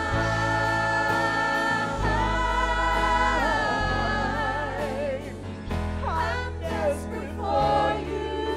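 Two women singing a worship song into microphones, holding long notes, over a band with steady bass and a regular drum beat.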